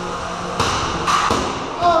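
Sharp thuds of 3 lb combat robots crashing inside the arena box: two hard impacts about half a second and a second and a quarter in, and a lighter knock just after.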